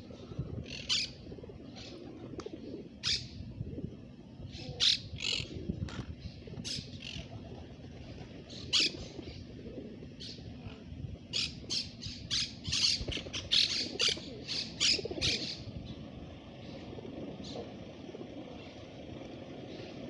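Monk parakeets calling in short, harsh squawks, some singly and then in a rapid, crowded run in the middle, over a low, steady background.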